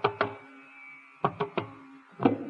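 Carnatic hand-drum strokes from a thani avartanam percussion solo: two sharp strokes, a pause of about a second, then a quick run of strokes resumes, over a faint steady low tone.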